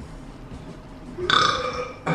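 A person burping once: a single loud belch of under a second, starting a little past a second in.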